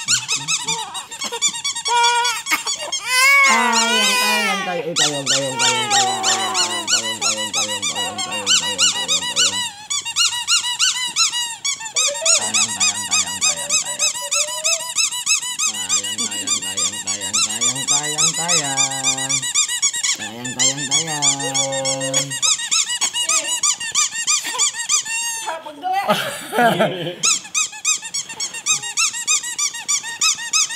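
Rubber duck squeeze toy squeaked over and over in quick succession, almost without a break.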